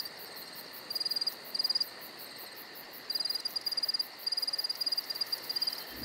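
Cricket chirping: short, high, pulsed chirps repeated at irregular gaps of under a second, over a faint steady hiss.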